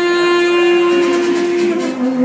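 Tenor saxophone holding one long note, then stepping down to a lower note near the end.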